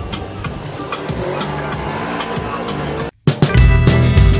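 Engine and road noise of a side-by-side UTV on the move. About three seconds in the sound cuts out suddenly, and music with a heavy bass beat starts.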